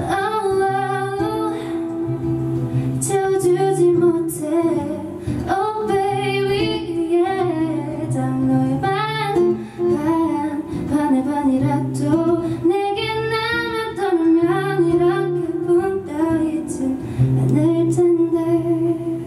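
A woman singing a slow song live into a microphone, her voice gliding between held notes, over a soft guitar accompaniment.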